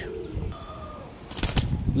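Domestic pigeons cooing softly, with a few sharp clicks about a second and a half in.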